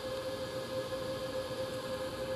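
Steady machine hum and fan noise with one constant mid-pitched tone, from an EG4 18kPV hybrid inverter running near its limit at about 14 kilowatts, with the space heaters and microwave it is powering.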